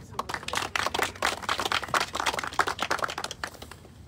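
A small group of people applauding: a dense patter of hand claps that swells soon after the start and thins out near the end.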